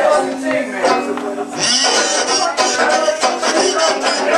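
Live swing-style band music with guitar playing and a voice in and out over it, heard through a camera in the room.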